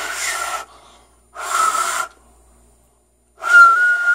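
Finger whistle blown three times with two fingers in the mouth: the first two blows are mostly a breathy rush of air with a weak whistle tone, and the third, near the end, is a clearer, louder steady whistle. It is a half-formed finger whistle, not yet the full loud blast.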